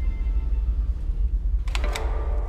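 A quick run of sharp mechanical clicks near the end, a slide projector changing to the next slide, over a low steady rumble.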